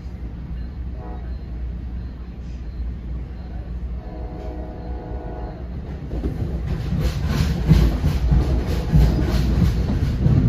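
Inside a moving NJ Transit commuter train: steady low rumble of the coach running on the rails, with a faint held tone about four seconds in. From about six seconds in it grows louder, with a quick, regular clickety-clack of the wheels over the rail joints.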